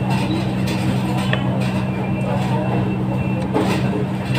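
A steady low mechanical hum, an engine or motor running without change, with faint voices in the background and a small click about a second and a half in.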